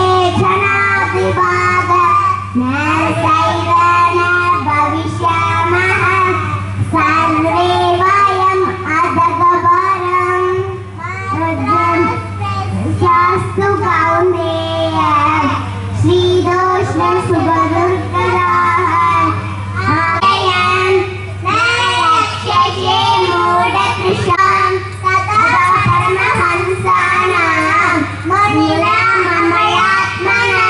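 Two young girls singing a devotional song together into one microphone, with a steady low hum underneath.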